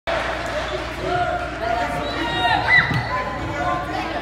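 A basketball bouncing on a hardwood gym floor, with many voices of players and spectators talking at once.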